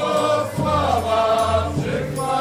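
Live Polish folk band music: a melody line over a low bass note that comes and goes about once a second.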